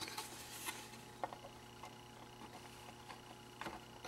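Faint clicks and light taps of a plastic project enclosure being handled and fitted together.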